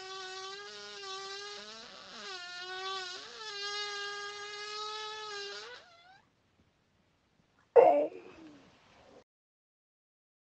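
A long, high-pitched screeching fart holding one steady tone, wavering briefly twice and ending in a short upward squeak about six seconds in. After a pause, one short, louder burst comes near the end.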